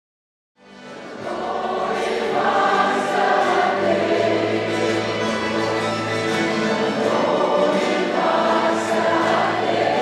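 A choir singing long held chords, fading in about half a second in and reaching a steady level within about a second.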